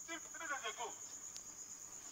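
A steady high-pitched drone runs throughout, with faint voices in the first second and a single short click about halfway through.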